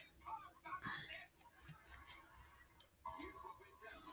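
Faint scattered clicks and rubbing of a hard plastic phone case being pried at by hand, very quiet overall.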